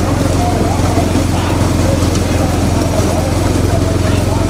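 Motor vehicle engines running steadily alongside a bullock cart race, under voices calling out.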